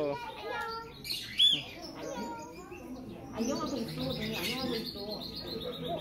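Small caged pet birds chirping, with scattered short chirps and then, from about halfway through, a quick run of high twittering notes that steps gently downward.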